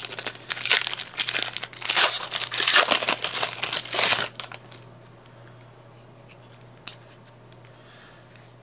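Foil trading-card pack wrapper crinkling and tearing as it is opened and crumpled by hand, stopping about four and a half seconds in; a single faint click near the end.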